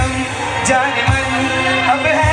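Live band music: voices singing over acoustic guitar and keyboard, with a low drum beat.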